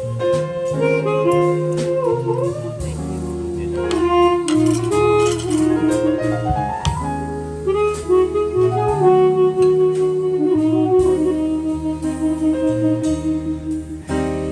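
Jazz harmonica playing a slow melody of long held notes with slides and vibrato, over piano, bass and drums with cymbals.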